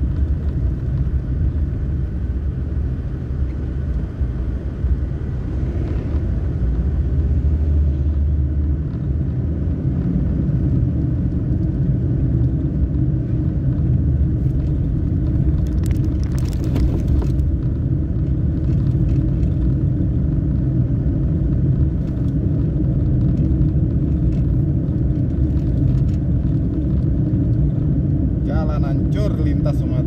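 A vehicle travelling along the highway: a steady, loud low rumble of engine and road noise, with a brief hiss about halfway through.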